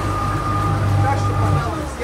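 A speedboat's twin outboard motors running steadily. Near the end their pitch slides down and the sound eases off.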